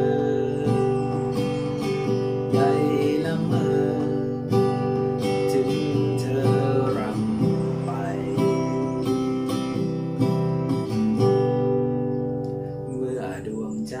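Steel-string acoustic guitar strummed in a steady rhythm on open G and C chords, with a man singing a Thai song over it. The playing softens for a moment near the end.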